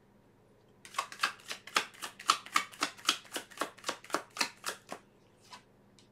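A tarot deck shuffled in the hands: a quick, even run of card slaps, about five a second, starting about a second in and stopping about a second before the end.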